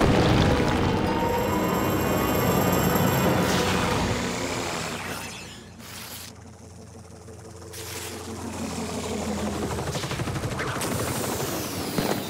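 Cartoon soundtrack: rumbling crash and debris sound effects over music. It dies down about halfway through and builds again toward the end.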